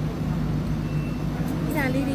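A steady low hum over background room noise, with a woman's voice starting near the end.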